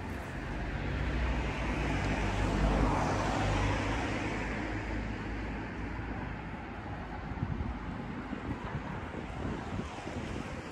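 A car passing on a street, its engine and tyre noise swelling to a peak about three seconds in and then fading away.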